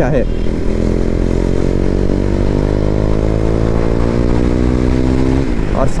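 KTM Duke 390's single-cylinder engine pulling hard under throttle, its pitch rising steadily as the bike accelerates, then falling away near the end.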